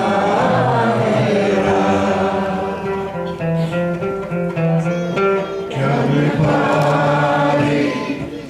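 A man singing a Greek song to his own acoustic guitar accompaniment.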